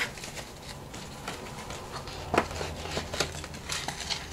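Paper pieces being handled and shifted on a desk: faint rustling and light taps, with one sharper tap about two and a half seconds in.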